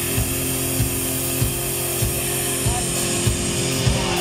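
Live rock band in an instrumental passage: a held, distorted electric-guitar chord over a steady drum beat of about three beats every two seconds.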